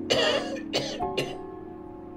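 Plastic squeeze bottle of paint sputtering as it is squeezed: three short hissing spurts of air and paint, the first and longest just after the start, the last brief, over soft piano background music.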